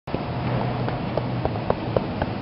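A car engine idling steadily, with a few light clicks in the second half.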